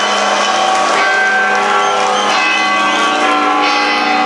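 A live metal band's sustained droning chord through the PA, held steady at one pitch as it rings out at the end of a song. A few short wavering cries from the crowd rise over it in the second half.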